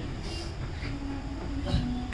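A low, steady rumble of room noise, with a few faint held tones in the middle and near the end.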